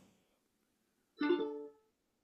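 A ukulele strummed once about a second in, the chord ringing briefly and fading out within about half a second.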